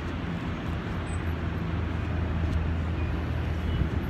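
Steady low drone of a motor vehicle engine with road noise, the low hum strengthening somewhat after the first second.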